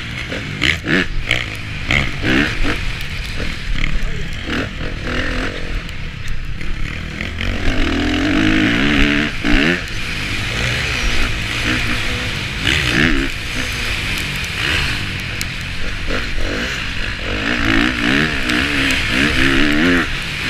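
KTM 450 SX-F four-stroke motocross engine heard from an onboard camera, revving up and falling back again and again through the gears, under a steady rush of wind noise.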